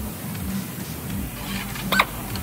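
Low steady workshop hum, then near the end a brief rising whine as a pneumatic air tool is triggered and spins up.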